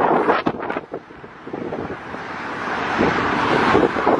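Outdoor wind and traffic noise on the microphone, swelling over the last couple of seconds, with a few short knocks and rustles in the first second.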